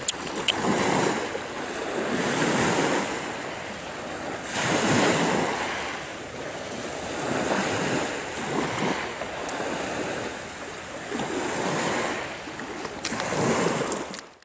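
Sea waves washing onto a shore, a rushing noise that swells and falls every few seconds, with wind blowing across the microphone.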